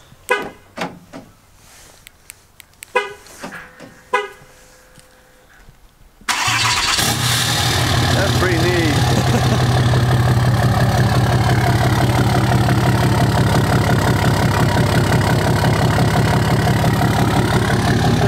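A Dodge Ram pickup's engine is started about six seconds in, catching abruptly and settling into a loud, steady idle through its modified exhaust. A few short clicks and knocks come before it.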